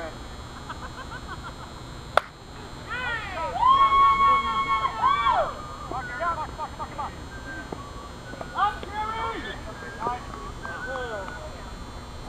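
A single sharp crack of a softball bat hitting the ball a couple of seconds in, followed by players shouting with long drawn-out calls.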